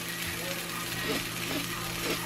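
Black bean burger patty sizzling steadily in oil in a nonstick frying pan.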